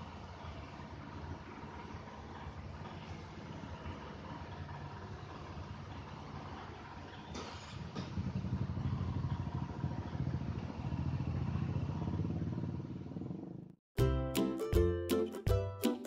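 A motor vehicle engine running steadily in the background, growing louder about halfway through. Near the end the sound cuts off abruptly and music with quick plucked notes begins.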